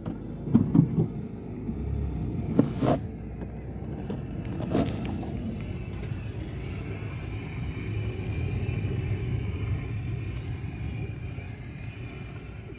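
A few sharp knocks in the first five seconds, then a car engine running steadily, heard from inside the car.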